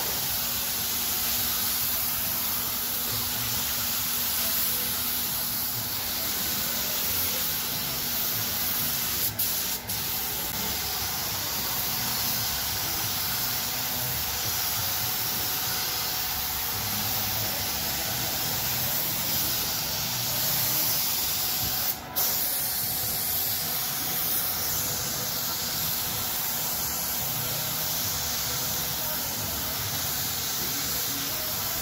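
Compressed-air paint spray gun with a gravity-feed cup, hissing steadily as it sprays paint onto a car body. The hiss breaks off very briefly, twice around ten seconds in and once at about twenty-two seconds, as the trigger is let go.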